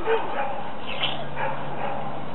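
A dog barking a few short times over steady outdoor background noise.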